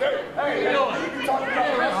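Speech only: voices talking, with chatter from the crowd.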